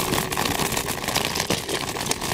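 Electric kick scooter ridden over rough asphalt: a continuous crackly rumble of tyre and road noise, dotted with many small rattles.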